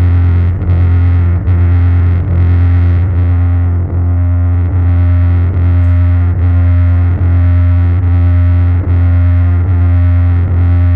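Electric bass run through a DigiTech Whammy and distortion pedals, sounding as a loud distorted low drone with no plucking. A pattern with brief dips repeats about every 0.8 seconds, sustained by the effects while the hands turn pedal knobs.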